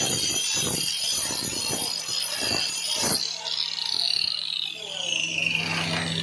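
Angle grinder grinding the edge of a granite stair tread to shape its molding, a rough, high-pitched grinding noise with uneven scrapes. About three seconds in it is switched off, and its whine falls steadily as the disc spins down.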